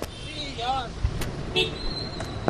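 Car and street traffic noise, with a faint voice calling out about halfway in and a couple of sharp clicks in the second half.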